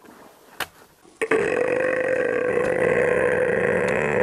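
A faint knock about half a second in. Then, just over a second in, a single long, drawn-out burp starts and holds a steady pitch.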